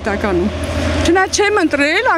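A woman talking in Armenian, with a low steady rumble underneath that fades out about halfway through.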